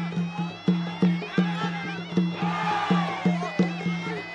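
Traditional Khmer boxing ring music: a reedy wind instrument, the sralai, plays a wavering melody over a steady drum beat of about three beats a second. The crowd shouts briefly near the middle.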